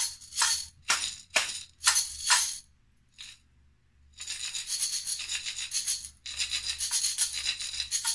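Glass jars filled with granola and macaroni shaken like maracas, to compare how they sound. First comes a string of separate shakes about two a second, then a pause, then two runs of fast continuous rattling.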